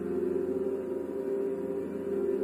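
Orchestra holding a steady, dense chord of many sustained notes in the middle and low register.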